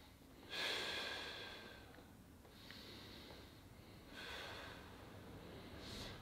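A person's slow, deep breaths in and out, taken twice while holding a stretch: faint, soft breathing sounds, the first, starting about half a second in, the loudest.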